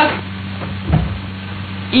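Steady low hum of an old archival film soundtrack in a pause between a man's words, with one dull thump about a second in.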